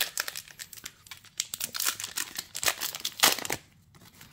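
Foil Yu-Gi-Oh booster pack wrapper crinkling as it is torn open by hand: a run of sharp crackles, loudest a little over three seconds in.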